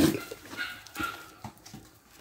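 Dogs playing together, giving a sharp bark at the start followed by a few fainter short barks and yips.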